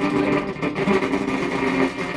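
Electric guitar played through the Two Way O.D. overdrive pedal: a continuous run of picked, overdriven notes.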